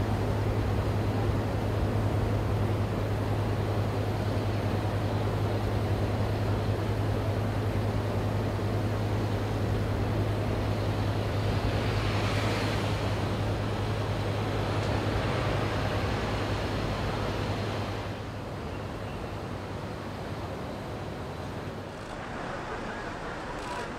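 Low, steady engine hum of a large diesel vehicle with surrounding road noise. A vehicle swells past about twelve seconds in, and the sound drops to a quieter background about eighteen seconds in.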